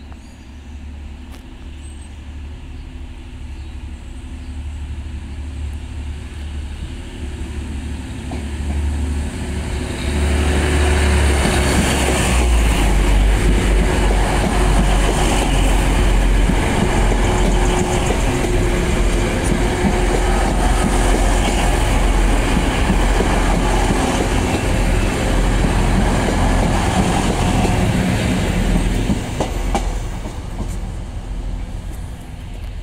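Two coupled Class 185 diesel multiple units approaching and passing close by. The sound grows steadily for about ten seconds, jumps sharply as the train reaches the spot, and stays loud with engine and wheel noise until it draws away near the end.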